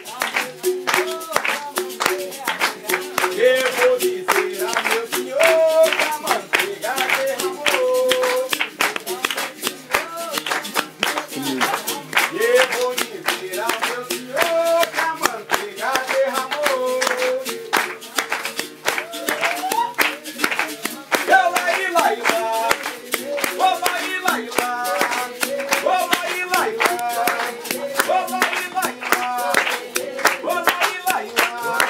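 A voice singing a wordless melody over steady rhythmic hand-clapping, in time with the music.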